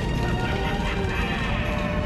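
Motor mechanism of an animated Halloween skeleton decoration running after being triggered, alongside the prop's spooky sound effects.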